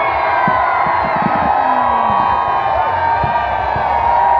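A large crowd cheering and shouting, many voices at once, with low thuds of fireworks beneath.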